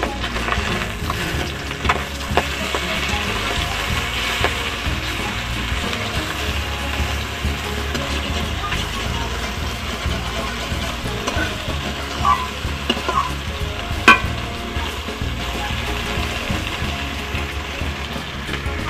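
Pangas and tengra fish sizzling as they fry in hot oil in a steel kadai, stirred with a metal spatula that scrapes and clicks against the pan now and then, with one sharp knock about fourteen seconds in.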